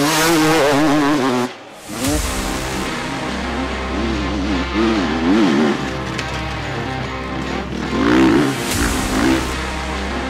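Enduro dirt bike engines revving up and down hard as riders power through dusty corners, in repeated surges, with a brief drop about a second and a half in. Background music with a steady bass line runs underneath.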